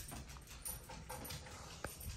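A small dog's claws clicking on a hardwood floor as it trots away: a run of light, quick taps, with one sharper knock near the end.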